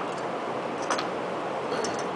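A few light clicks from a hand tool working the shroud bolts on a small engine, one sharp click about a second in and fainter ticks near the end, over steady workshop room noise.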